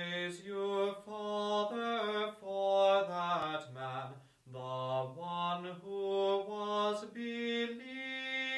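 Unaccompanied male chant: a slow melody sung on held notes that step up and down, with a short break about four and a half seconds in.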